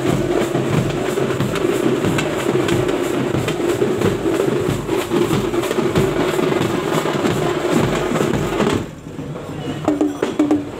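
Group of large stick-beaten bass drums played together in a fast, dense rhythm. The drumming stops abruptly about nine seconds in, leaving a few scattered beats.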